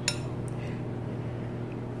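A metal spoon clinking against a glass bowl while scooping rice: one sharp clink right at the start and a fainter tap about half a second in, over a low steady hum.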